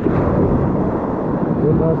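Ocean surf washing through the shallows, a loud, steady low rumble.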